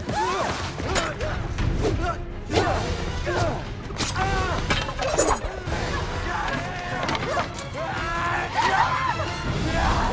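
Film soundtrack of a chaotic fight: people yelling and screaming, with crashes and thuds of blows and debris over score music.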